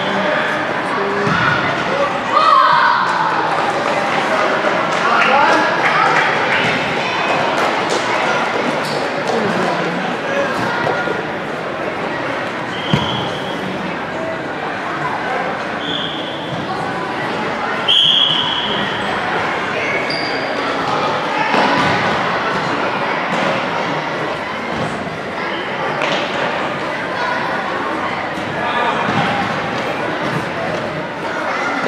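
Indoor futsal game in an echoing gym: voices calling out, the ball knocking off feet and the floor, and a few short high squeaks, about 13, 16 and 18 seconds in.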